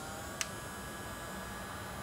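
Steady, faint hiss of background noise, with one short click about half a second in.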